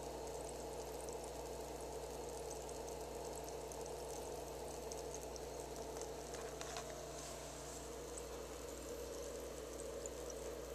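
Faint, steady fizzing and crackle of gas bubbles in a baking-soda electrolysis bath, the hydrogen and oxygen given off as current strips rust from a steel part. A steady low hum runs underneath.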